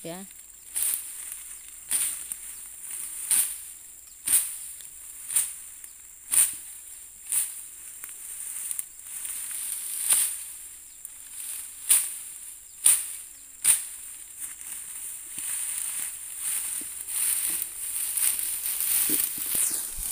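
Dense resam (iron fern) being trampled and pushed down: sharp crunches of snapping stems about once a second, turning into denser rustling of fronds near the end. A steady high-pitched insect chorus runs underneath.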